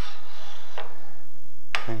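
A brief faint click from the metal parts of a wood-lathe hollowing system's articulating arm being handled, about a second in.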